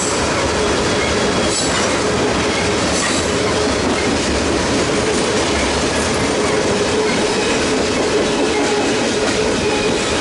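Tank cars of a freight train rolling past close by: a steady rumble and clatter of steel wheels on the rails, with a faint steady squeal.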